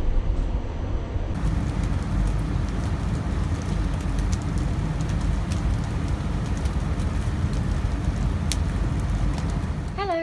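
Rain falling steadily outdoors during a thunderstorm, with a constant deep rumble underneath and a few faint ticks.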